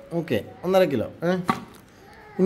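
A person speaking in short phrases, with a sharp click about a second and a half in.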